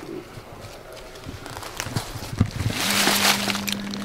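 Dry fallen leaves rustling and crunching as a hand reaches into the leaf litter to pick a mushroom, with scattered small crackles at first and a louder rustle about three seconds in. A steady low hum starts shortly before the end.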